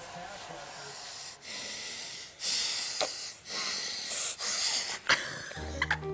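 A baby making funny breathy noises, several hissy bursts in a row, each about a second long. Piano music starts near the end.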